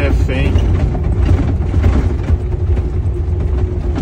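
Heavy truck driving on a rough road, heard from inside the cab: a steady low engine and road rumble with a constant drone, and frequent small knocks and rattles as the cab shakes over the uneven surface.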